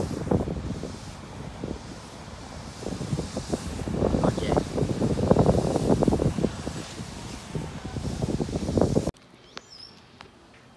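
Wind buffeting a phone's microphone in uneven gusts, strongest in the middle, cutting off suddenly near the end.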